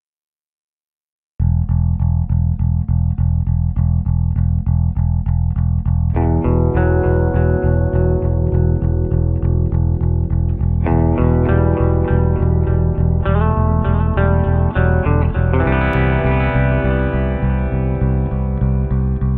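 Rock band instrumental intro: about a second and a half in, bass and electric guitar start a fast, steady pulsing riff, with further guitar parts layering in at around six seconds and again near the end.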